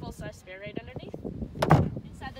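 A woman talking, then about 1.7 seconds in a single loud thump, something in the SUV's cargo area being shut.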